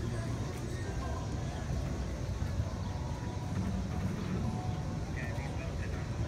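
Street ambience: a steady low traffic rumble, with faint chatter from passers-by about five seconds in.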